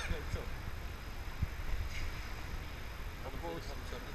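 Indistinct voices of people close by, over a steady low rumble.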